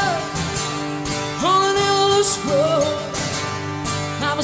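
Live rock band music: a male lead vocal sings a verse line, holding one long note in the middle, over guitars, bass and drums.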